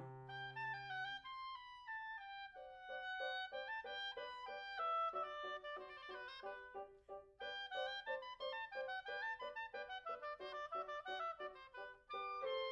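Oboe playing a quick passage of short, detached notes, with a brief break a little past halfway. A low sustained chord beneath fades out about a second in.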